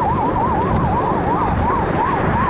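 Emergency-vehicle siren in a fast up-and-down sweep, about three cycles a second, with a second sweep overlapping out of step. A steady low road and wind rumble runs underneath.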